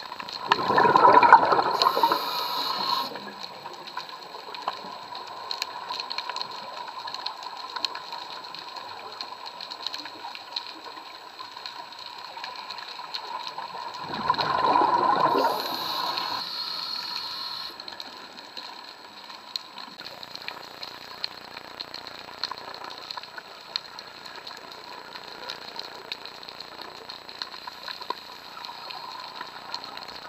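Underwater scuba breathing: two bursts of exhaled bubbles from the diver's regulator, about a second in and again about fourteen seconds in, each lasting two to three seconds. Between them a steady faint hiss with a scatter of light ticks.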